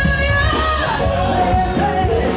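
Live band music with a singer's voice carrying a melody over steady bass.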